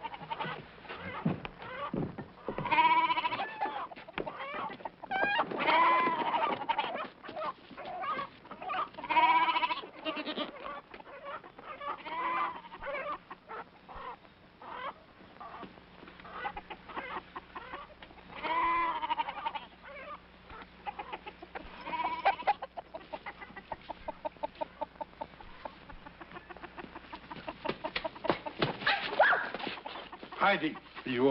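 Goats bleating again and again and chickens clucking and squawking: farm animals stirred up in the night, which the old man takes for a sign of a weasel. Near the end the clucking runs fast.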